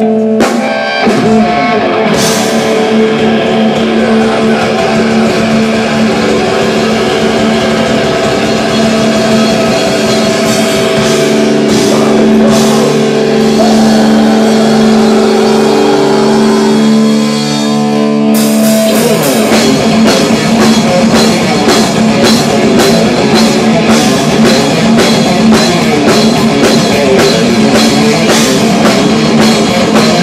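A live heavy metal band played through a club PA. Distorted electric guitars hold long, ringing chords over drums and cymbals for the first eighteen seconds or so. Then the whole band breaks into a fast, driving riff with a rapid, even drumbeat.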